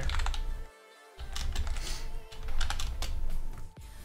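Computer keyboard typing in several short bursts of keystrokes.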